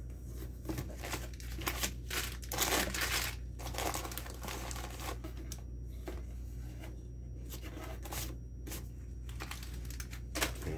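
Cardboard shipping box being opened by hand, with paper and packing rustled, crinkled and torn in irregular bursts, busiest about three seconds in.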